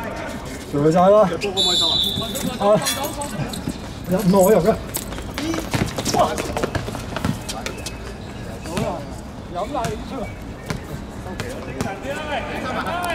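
Players shouting calls to each other during a small-sided football match on a hard court, loudest in the first five seconds. A short whistle blast sounds about a second and a half in, and scattered sharp thuds of the ball and feet come off the hard surface.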